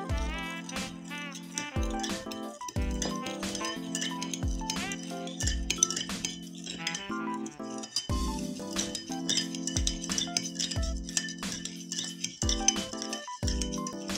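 Background music with sustained chords and a steady beat, over repeated light clinks of a metal spoon against a porcelain bowl as salt and sugar are stirred into water to dissolve.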